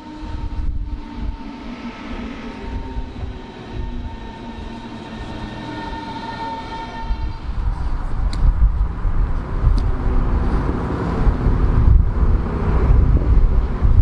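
Berlin S-Bahn class 481 electric train running along the platform, with a low rolling rumble and a steady whine of several tones from its traction drive. The rumble grows louder in the second half, and there are a couple of sharp clicks about eight and nine seconds in.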